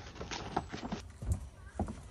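Papers rustling and shuffling as a stack of documents is pulled from a metal filing cabinet drawer. About a second in come a few heavy footsteps as the stack is carried away.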